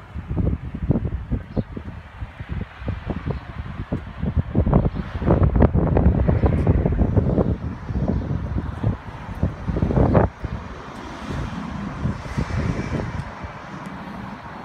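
Wind buffeting the microphone in irregular gusts, strongest in the middle, over street traffic; a steadier rush of passing traffic near the end.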